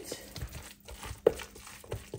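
Spoon stirring mayonnaise-coated imitation crab salad in a clear plastic container, with light scraping and clicking and one sharper knock on the plastic about a second in.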